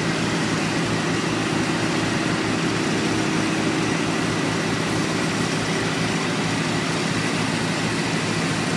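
A heavy engine running steadily, a constant hum with a few steady tones, typical of the diesel generators and pumps dewatering flooded buildings. Beneath it lies an even hiss that fits water gushing from a discharge hose onto the street.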